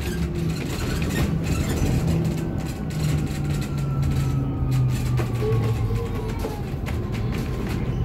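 Inside a city bus on the move: a steady low rumble from the drivetrain and road, with a thin whine that slowly falls in pitch over a few seconds.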